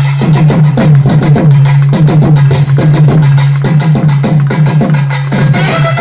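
Live naiyandi melam drumming: thavil barrel drums played in a fast, dense rhythm, many strokes dropping in pitch, over a steady low drone.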